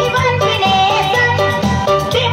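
A woman singing into a microphone, her voice wavering over amplified backing music with a steady bass beat.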